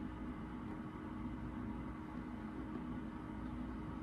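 Steady low machine-like hum with a constant low rumble and faint hiss, the background noise of a room with something running.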